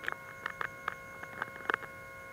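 A tiny Compact Flash–sized microdrive hard disk running at speed: a faint, steady, high whine of several tones, with about seven faint, irregular clicks. The drive powers up and spins, but the host computer does not detect it.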